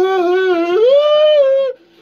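A man's drawn-out, high-pitched sung vocal, mimicking a girly voice. The held note steps up in pitch a little under a second in, holds, and breaks off shortly before the end.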